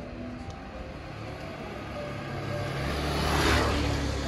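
A motor vehicle passing by on the street, its sound building to a peak near the end.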